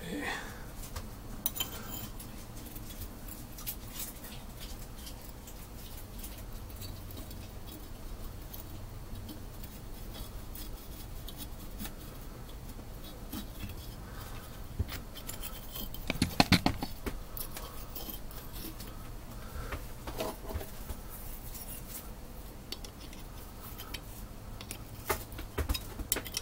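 Small metal parts of a brake master cylinder being handled and worked on a workbench: scattered light clicks and clinks, with a quick cluster of knocks about two thirds of the way through. A steady low hum underlies it.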